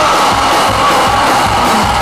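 Live rock band playing loudly: electric guitars held over drums.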